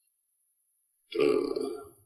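A single short, rough throaty vocal sound, like a burp or guttural grunt, lasting under a second and starting about a second in.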